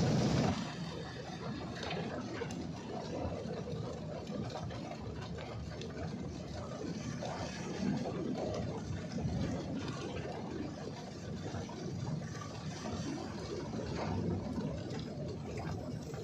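Heavy rain and rushing flood water heard from inside a car, over the steady running of a vehicle engine. Loudest in the first moment, as a motor scooter splashes past through the flood.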